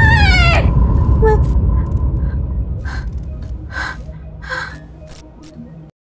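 A woman's sharp gasp, rising then falling in pitch, as she wakes with a start from a nightmare, followed by a few short breathy sounds over a low rumble that fades out.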